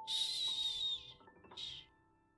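Soft background music with sustained notes, under a breathy hiss that lasts about a second, followed by a shorter hiss about a second and a half in.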